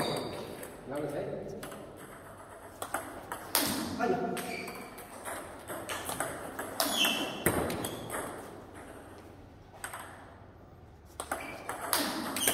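Table tennis ball clicking off the bats and bouncing on the table during pendulum serves and their returns: short runs of quick, sharp knocks with pauses between rallies. Voices are heard a few times in the hall.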